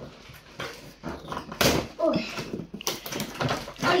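Cardboard box and plastic packaging being handled, with rustles and knocks around the middle and near the end. Short whining vocal sounds come twice in between.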